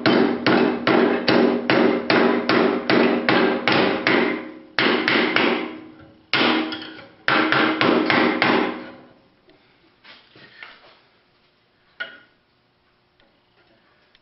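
Hand hammer striking red-hot 7/16-inch steel round bar over the edge of a steel auto body dolly, about three ringing blows a second, bending the fishtailed end over into the hook's lip. After about four and a half seconds the blows come in two shorter flurries and stop about nine seconds in.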